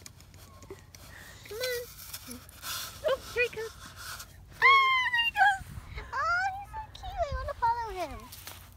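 Children's high-pitched voices calling "Come on!" and exclaiming excitedly in short bursts.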